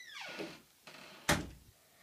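A bedroom door swinging shut: a creak that falls in pitch, then one sharp knock about a second and a half in as it closes.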